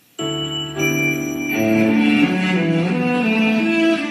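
Instrumental backing track for a Chinese ballad starting abruptly just after the start, its intro playing sustained chords that change every second or so.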